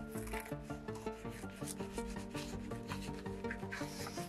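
Hands rubbing and pressing a leather lining into a shoe upper, a few short rubbing strokes heard over background music with a quick melody of short notes.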